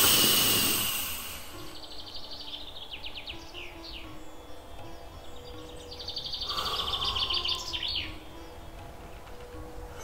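Ambient relaxation soundtrack: soft held music notes with recorded bird song, rapid high trills and falling chirps, heard twice. A rushing swell of noise opens it and fades over about a second and a half.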